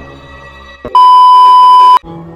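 A loud, steady, high electronic beep, one unbroken tone lasting about a second. It starts about a second in, just after a short click, and cuts off suddenly.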